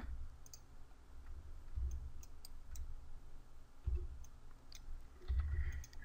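Faint, scattered clicks of a computer mouse, about eight spread unevenly, over a low steady hum.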